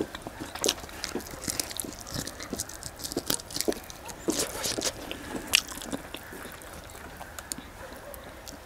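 Close-miked mouth sounds of a person chewing a mouthful of chicken rice eaten by hand: irregular wet clicks throughout, busiest in the middle.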